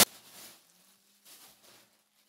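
Faint rustling of plastic packaging in two or three short bursts, over a faint low hum.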